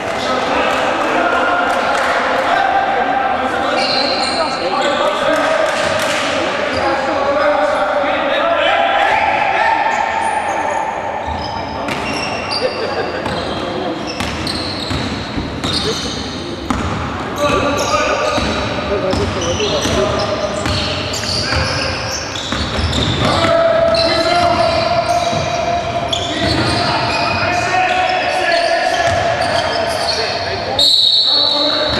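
A basketball bouncing on a wooden gym floor during a game, mixed with voices and shouts from players and spectators, echoing in the large hall.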